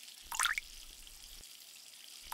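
A short splash of warm water poured from a glass measuring cup into a steel bowl of flour, about half a second in, over a faint steady hiss.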